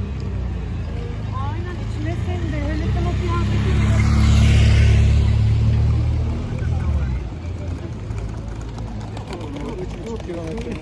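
A motorcycle riding past close by through a crowd: its engine grows louder to a peak about halfway through, then fades away. Passers-by are talking.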